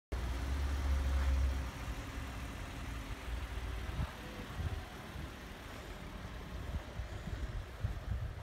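A car engine idling, loudest in the first two seconds, then fading into a lower, uneven rumble.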